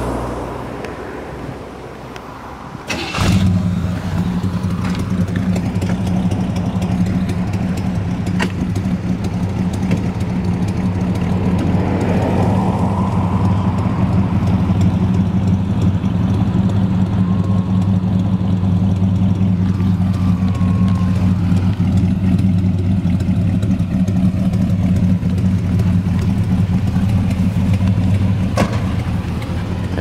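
The 1968 Buick GS 400's original 400 cubic-inch V8 starting about three seconds in and settling straight into a steady idle.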